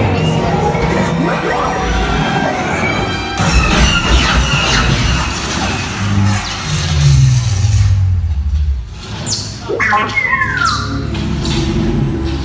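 Loud theme-park dark-ride soundtrack: a music score mixed with sci-fi battle sound effects. Low rumbles fall in pitch around the middle, and a short downward laser-blaster zap comes near the end.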